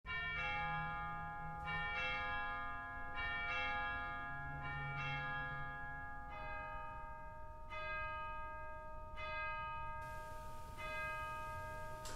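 Bells ringing a slow series of strikes, each note ringing on into the next. The pitch steps lower about halfway through.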